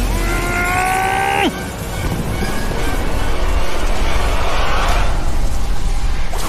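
Fight-scene sound design over a dramatic score. A held, slightly rising tone lasts about a second and a half and cuts off sharply. After it comes a steady rushing noise with a deep rumble, as the energy attack is released.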